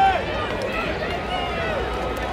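Football stadium crowd: many voices talking and calling out over one another, with one louder voice at the very start.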